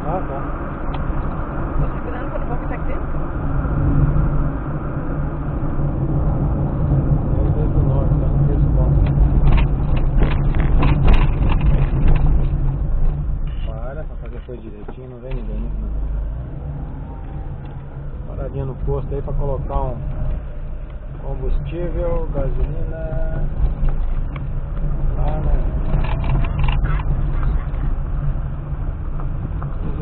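Steady engine and tyre rumble heard inside a moving car's cabin, dipping briefly in the middle. People talk over it through the second half.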